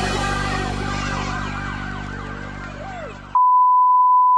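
Background music fading down, cut off abruptly about three seconds in by a loud, steady single-pitch test tone: the reference tone that plays with colour bars.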